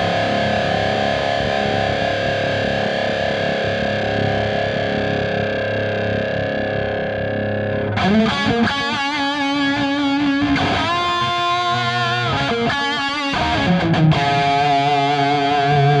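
Electric guitar through a high-gain Line 6 Helix patch with two compressors in series: a held note rings on at steady level for about eight seconds, its sustain kept up by the double compression. Then a new picked lead phrase with bends and vibrato follows.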